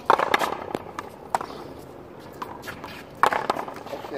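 Sharp smacks of solid paddles hitting a rubber ball and the ball hitting the wall in a one-wall paddleball rally: a quick cluster at the start, two single cracks in the next second and a half, and another cluster about three seconds in.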